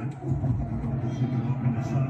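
Televised football game audio playing through the reaction: an announcer's voice over a steady low hum and field noise as a play is run.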